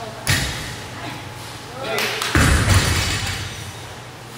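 A loaded barbell with rubber bumper plates coming down onto a rubber gym floor after deadlifts. There are two heavy thuds, one just after the start and a louder, longer one about two seconds later.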